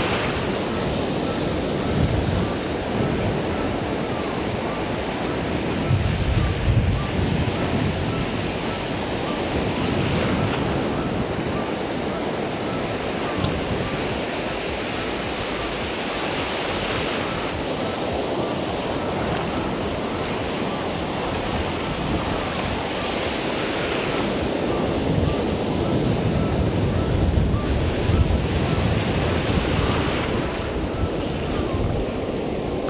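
Surf breaking and washing in over a shallow rocky reef flat, a steady rush of foaming water, with wind buffeting the microphone in stronger low gusts twice.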